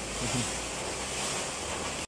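Steady rushing hiss of a high-pressure water spray, typical of a pressure-wash lance running in a nearby car-wash bay.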